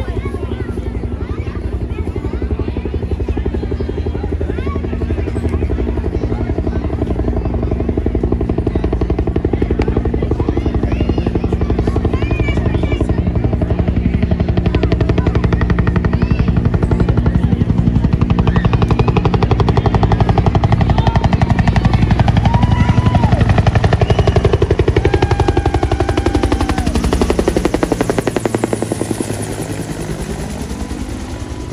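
Bell UH-1 Huey helicopter approaching and flying low overhead, its rotor beating in a fast steady pulse that grows louder to a peak about two-thirds of the way through. Near the end the pitch falls as it passes over.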